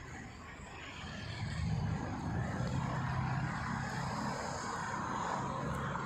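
A vehicle engine running nearby: a steady hum that grows louder about a second and a half in and stays up.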